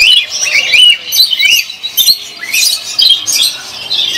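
Many caged pet birds, lovebirds among them, chirping and squawking loudly in quick, overlapping short calls.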